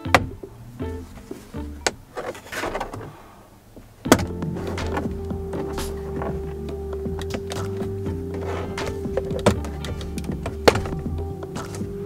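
Background music, with several sharp plastic clicks as the dash trim panel below a Toyota Tacoma's steering column is pulled loose and its retaining clips let go.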